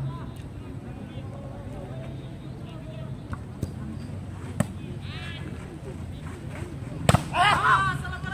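Volleyball being struck by hand during a rally: a couple of light smacks, then a loud sharp hit about seven seconds in, followed straight away by players shouting, over a murmur of voices from the sideline.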